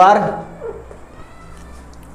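A man's voice drawing out one syllable with a rising pitch, then quiet room tone with a faint low steady hum.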